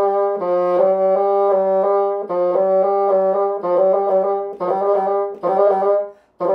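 Bassoon playing a run slowly and evenly, a repeating figure of connected notes about two or three a second: a hard passage practised at a reduced tempo. In the last two seconds the line breaks into shorter phrases with brief pauses.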